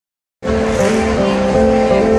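Live band music from a concert stage, loud from the crowd: steady held notes that shift in pitch now and then. It cuts in abruptly about half a second in.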